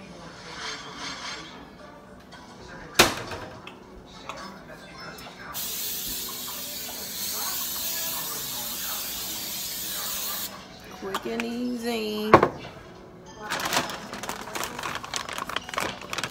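Kitchen counter handling sounds: a sharp click, then a steady hiss for about five seconds that stops abruptly, then a loud knock and clattering, with voices and music in the background.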